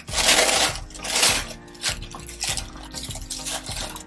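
Paper rustling as the box's card and tissue wrapping are handled: two loud crinkling bursts in the first second and a half, then softer handling sounds, over quiet background music.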